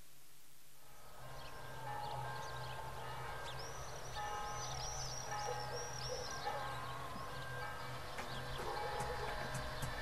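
Birds chirping over soft sustained music that fades in about a second in, with a quick run of high, repeated chirps in the middle.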